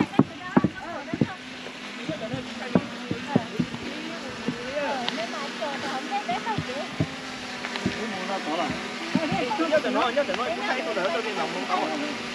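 Several people talking at a distance, not in words that can be made out, over a steady low hum. Short knocks near the start fit footsteps on the path.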